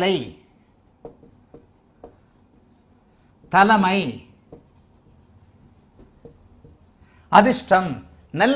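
Marker pen writing on a whiteboard: faint short scratches and taps, one for each stroke of the letters.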